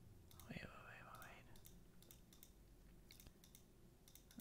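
Near silence, with a few faint clicks at the computer while working in Photoshop's layers panel, and a brief faint murmured hum of a voice near the start.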